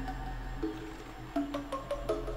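Background music with a few held notes, a new note entering about half a second in and again about a second and a half in.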